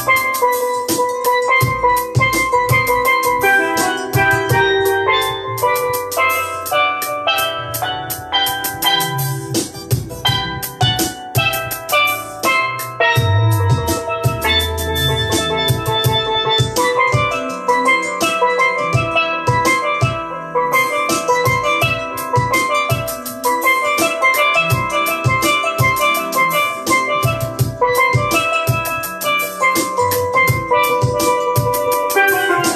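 Steel pan played with sticks in quick, ringing runs of notes, over a steady drum-kit beat and a bass line.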